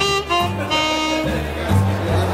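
ROLI Seaboard keyboard synthesizer played in a jazz style: a melody of short notes and one longer held note over a sustained bass note that moves to a new pitch near the end.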